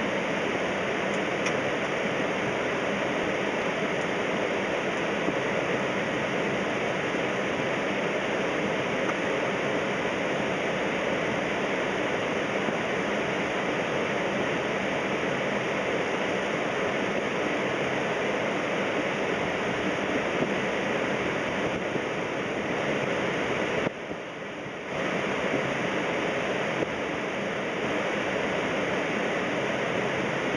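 Steady rushing of airflow and engine noise on a Boeing 767 flight deck in descent, dipping for about a second near the end.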